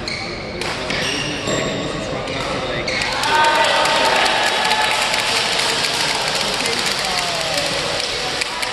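Badminton hall sounds: racket strikes on shuttlecocks and court shoes squeaking on the court mats, mixed with players' voices. The clatter grows busier and louder about three seconds in.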